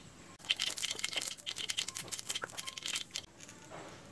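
Shredded cabbage mixture being handled and stirred in a steel bowl, a faint crinkly rustling made of many small irregular clicks that thins out near the end.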